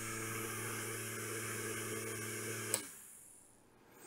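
Small 6 V DC motor spinning a fan propeller with a steady hum. A sharp relay click comes about three-quarters of the way in, and the motor cuts off as the Arduino's timed on-off cycle switches it out.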